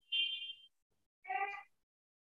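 Two short, faint pitched calls about a second apart: the first thin and high, the second lower and fuller.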